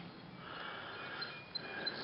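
Faint outdoor ambience with a few short, faint high chirps in the second half.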